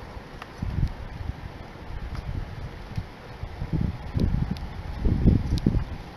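Wind buffeting the phone's microphone in uneven gusts, heaviest in the second half. No horn sounds.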